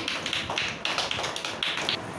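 A group of children and a teacher clapping their hands: a quick run of sharp claps, several a second.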